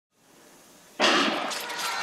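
Near silence, then about a second in a sudden loud burst that settles into a steady noisy din: the arena sound of a speed-skating race.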